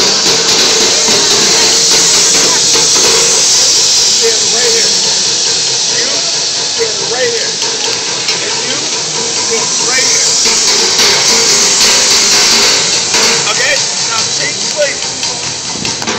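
Busy crowd noise around a street bucket drummer: a loud, steady hissing wash with voices over it, and no clear run of drum beats.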